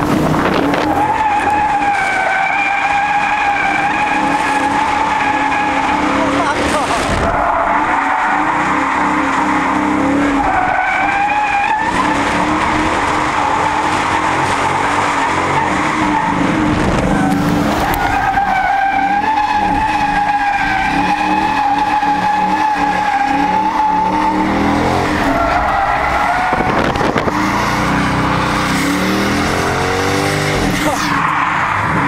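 Dodge Challenger SRT8's V8 engine running hard while its tyres squeal in long, steady slides: four squeals, the longest about six seconds.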